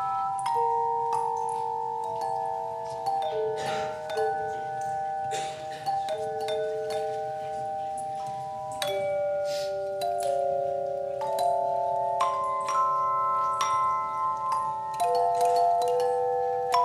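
An ensemble of hand-held bells playing a slow melody in chords, each note struck sharply and left to ring on into the next, several sounding at once.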